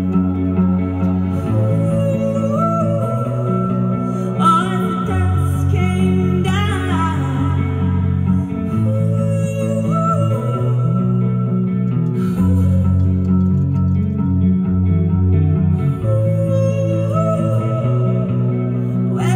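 Live band playing a slow song: sustained bass and keyboard notes that change every second or two under electric guitar, with a woman singing long held notes.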